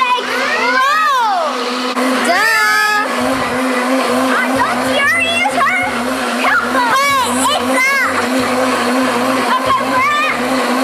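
Countertop blender running steadily at full speed, blending a green smoothie, with children's high voices squealing and gliding up and down in pitch over it. Background music with bass notes comes in about four seconds in.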